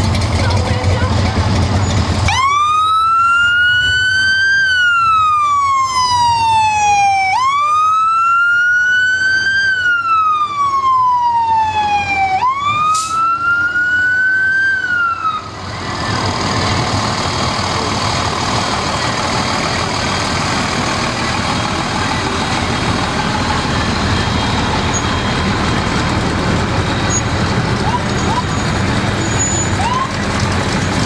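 Fire truck siren wailing in three long cycles, each rising quickly and then sliding slowly down, cutting off about 15 seconds in. Heavy engine rumble runs under it.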